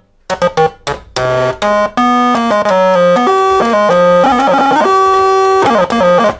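Soviet toy synthesizer played in its lowest octave setting, one note at a time: a few short notes, then longer held notes stepping up and down in pitch. It sounds very loud.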